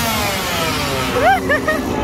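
A small engine held at high revs, then winding down so its pitch falls steadily; about a second in, short high-pitched voices cry out over it.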